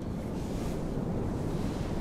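Wind and ocean-surf ambience from a music video's soundtrack: a steady rushing noise that starts abruptly.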